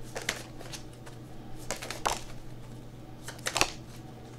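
Tarot cards being shuffled and handled by hand: a scattered handful of soft flicks and snaps of card stock, several of them close together near the end, over a low steady hum.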